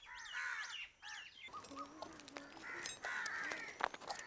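Birds calling: a run of harsh, crow-like calls in the first second and a half, then thinner high chirps and whistles.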